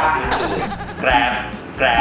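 Voices saying 'Grab' over and over in short syllables, twice in this stretch, over light background music.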